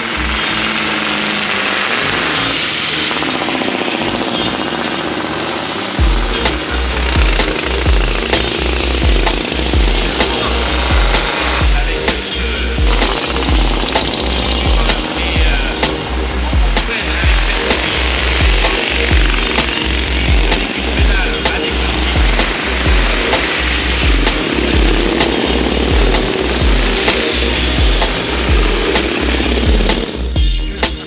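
Engines of vintage cyclecars and a tricyclecar running hard as they race past, under background music; a steady low beat comes in about six seconds in.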